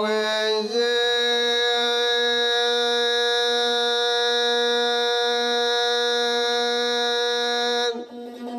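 Rababa, the Bedouin one-string fiddle with a skin-covered frame body, bowed on one long steady note rich in overtones. The note starts about a second in and breaks off just before the end.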